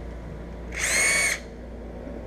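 Cordless drill running in one short burst of about half a second near the middle, a steady high whine, as it bores a 3/16-inch hole through a plastic body panel.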